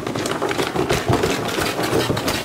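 A person bumping down wooden stairs on his bottom: a rapid run of thumps and knocks with clothing and handheld-camera rustle. The bumps hurt.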